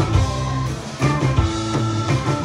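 Live hill country blues-rock band playing an instrumental passage between sung lines: electric guitars, bass and drum kit. The band eases off briefly just before a hit about a second in.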